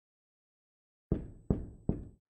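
Knuckles knocking on a door three times in quick, even succession, starting about a second in.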